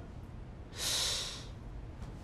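A man's heavy sigh: one breathy exhale of under a second, about a second in.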